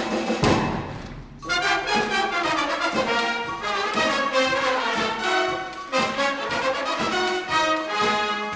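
High-school wind band playing: a full-band sound dies away about a second in, then a brass passage of accented notes enters with the trumpets prominent.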